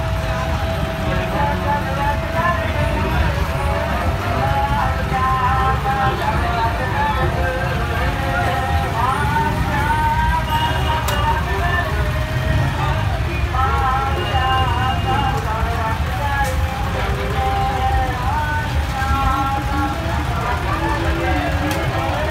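Voices singing devotional kirtan with long held notes, mixed with crowd voices, over the steady low rumble of tractor engines running in a procession.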